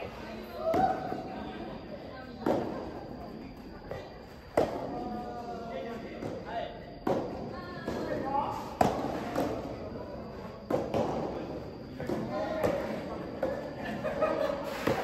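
Soft tennis rally: rackets striking the rubber ball about every two seconds, each hit echoing in a large hall, the loudest hit near the middle.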